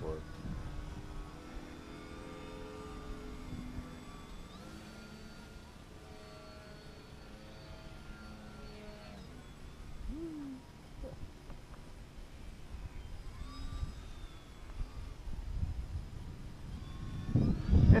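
Electric motor and propeller of a radio-controlled model biplane flying overhead at a distance, a thin whine that rises in pitch as the throttle opens a couple of times, with wind rumbling on the microphone.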